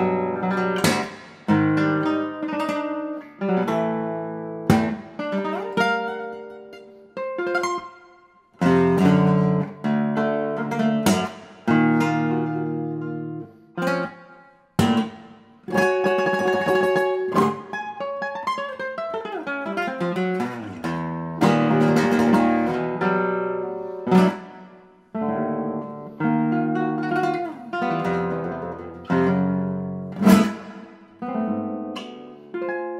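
Classical guitar played solo: sharply attacked chords and fast runs, broken by a few brief pauses where the notes ring away.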